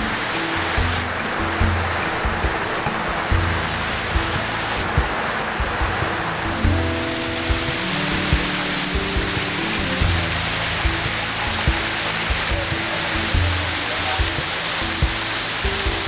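Rush of water cascading down a man-made stepped waterfall into a pool, under background music with a steady beat.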